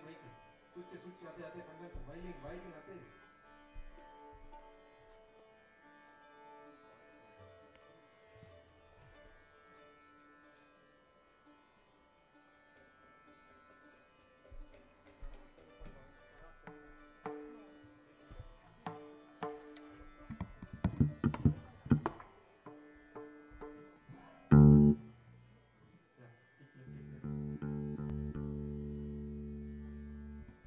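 A small Indian instrumental ensemble led by a sitar, playing soft, sparse, slow notes. A run of sharper plucked and struck notes comes about two-thirds of the way in, then a single loud thump. Near the end a louder held chord with a deep bass sounds.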